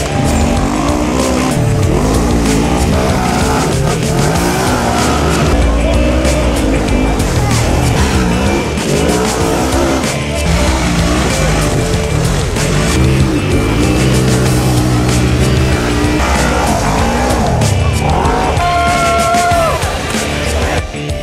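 Side-by-side UTV engines revving hard, the pitch climbing and dropping again and again as the machines claw up steep hills under load, over background music.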